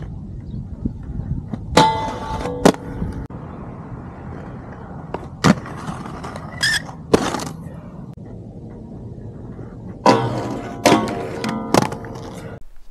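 Inline skate wheels rolling on hard ground in a steady rumble, broken by about eight sharp hits and scrapes from landings and grinds. Some of them ring on with a held tone.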